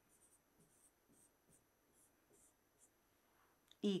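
Faint scratching of a pen writing on an interactive whiteboard, in short irregular strokes as a few words are written out.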